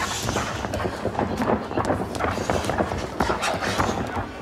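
Wrestling-arena ambience: a steady crowd murmur with many scattered sharp knocks, several a second, as two wrestlers grapple on the ring canvas.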